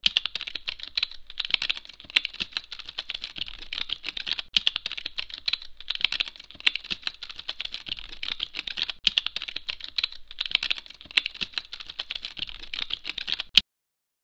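Typing on a computer keyboard: a fast, uneven run of key clicks, with a sharper final keystroke near the end before it stops.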